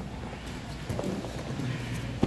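Scattered soft thumps and knocks of grapplers' bodies, hands and feet on foam mats during jiu-jitsu rolling, over a low steady hum.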